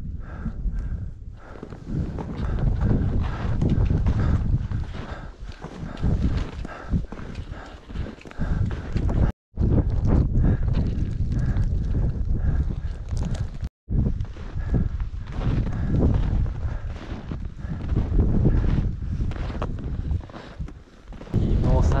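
Strong gusty wind buffeting the microphone, swelling and easing every few seconds, with two sudden brief dropouts at cuts.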